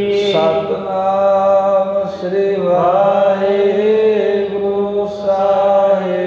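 A man chanting a Sikh devotional simran in long, drawn-out notes, with a steady low drone held underneath.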